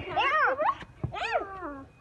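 Two drawn-out wavering cries, each rising and then falling in pitch, about a second apart.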